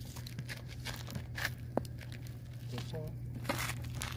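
Scattered clicks and crackles over a steady low hum, with a short vocal sound about three seconds in.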